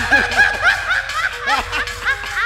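A man laughing into a microphone, a quick run of short ha-ha bursts.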